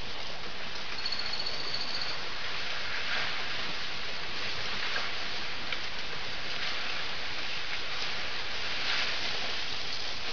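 Steady hiss of outdoor ambience picked up by a camera trap's microphone, with a thin, high, steady whistle lasting about a second, starting about a second in, and a few faint rustles.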